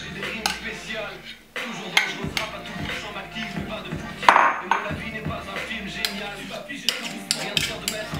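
A metal spoon scraping and clinking against a ceramic bowl and mug as thick batter is scraped out of the bowl into the mug: a run of sharp clicks and scrapes, with one louder clatter about four seconds in.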